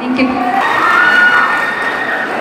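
Several children shouting and cheering together, just as a song ends.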